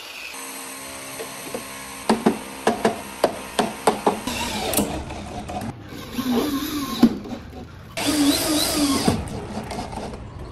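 Corded electric drill driving screws up into wood-plastic composite ceiling panels, in two short runs about six and eight seconds in. Before them come a steady hum and a quick series of sharp knocks.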